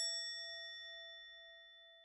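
A single bell-like ding struck once, ringing out and fading away steadily over about two seconds; an edited-in sound effect.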